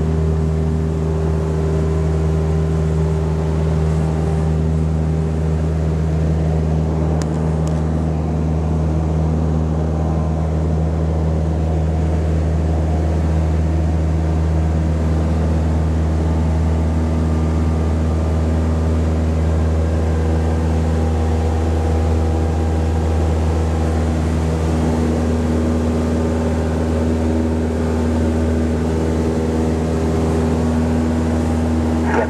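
Single-engine light aircraft's piston engine and propeller droning steadily, heard from inside the cabin in flight.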